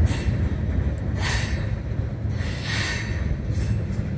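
Freight train rumbling away into the distance after its last car has passed, a steady low rumble with noisy swells about once a second.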